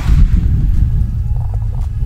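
Wind buffeting the camera's microphone and the camera being handled: a loud, uneven low rumble.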